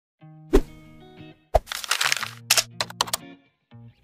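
Short intro music: held notes punctuated by sharp hits, the loudest about half a second in and again at a second and a half, then a rushing swell and a quick run of short hits before it stops.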